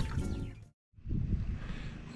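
A sound fades out into a brief dead silence at an edit, then steady wind noise rumbles on the microphone outdoors.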